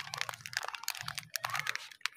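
Lux soap bar's wrapper crinkling and crackling as it is pulled open and slid off the bar, a quick irregular string of sharp crackles.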